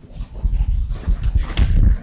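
Rustling, rumbling handling noise on the microphone, made of many short scrapes. It builds up about half a second in and is loudest near the end.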